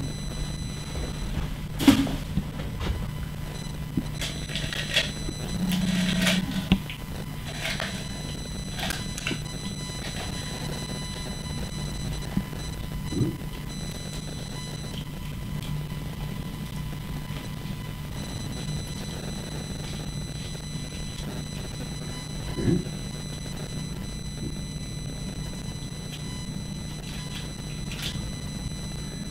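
A pomegranate being torn apart by hand and its seeds squeezed into a glass blender jug: scattered soft crackles and clicks, busiest in the first third. They sit over a steady electrical hum with a faint high whine.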